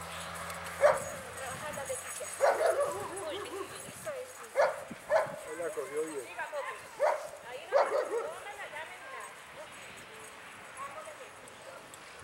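A dog yipping and barking in short calls, about half a dozen in the first eight seconds, then falling quieter near the end.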